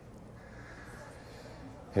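Faint steady background noise, room tone, in a pause between a man's spoken phrases.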